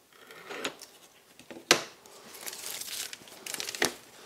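Double-sided tape being peeled and pressed onto a board, with a crinkling rustle from the tape and its backing and two sharp ticks, one a little before the middle and one near the end.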